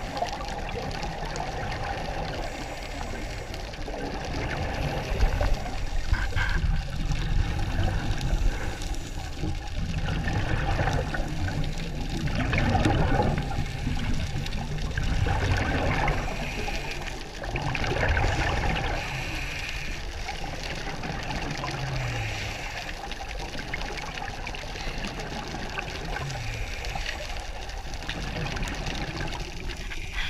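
Underwater scuba breathing: regulator exhalations send out bubbles that gurgle and rush in repeated swells, louder in the middle stretch, over a steady underwater hiss.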